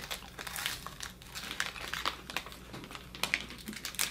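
Crinkling of a small individually wrapped wafer's wrapper being handled and torn open, in many short irregular crackles.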